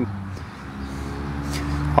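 Steady low machine hum with a few level tones, and a single short click about one and a half seconds in.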